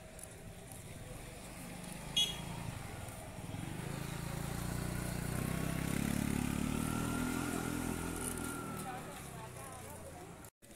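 A motor scooter's small engine passing close by, swelling over a few seconds and then fading, with people's voices on the street. A brief sharp high-pitched sound, like a bell or clink, comes about two seconds in.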